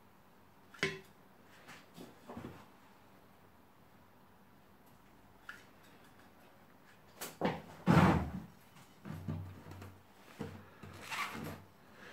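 Bonsai substrate being scooped and tipped into a terracotta pot, heard as scattered light knocks and handling noises, with the loudest burst about eight seconds in and more near the end.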